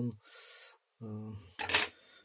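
A man's voice trailing off mid-sentence, then a breath and a short hesitation sound, with a brief scraping noise near the end.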